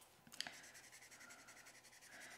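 Faint scratchy strokes of a Copic alcohol marker's nib flicked across white cardstock, with a tiny click about half a second in.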